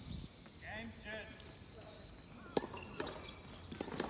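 Quiet outdoor tennis court between points: a brief voice call about a second in, then a few sharp taps on the hard court in the second half.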